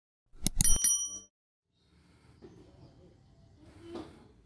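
Logo-animation sound effect: a couple of quick clicks and a short bright bell ding, about half a second in, ringing out within a second, as a subscribe button is clicked. Faint background ambience follows.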